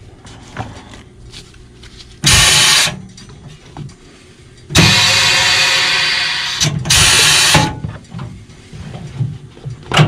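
Pneumatic shoe sole press cycling, in three loud bursts of hiss: a short one, a long one of about two seconds that slowly fades, and another short one. It is pressing a freshly glued leather midsole onto a shoe a section at a time to squeeze out air pockets.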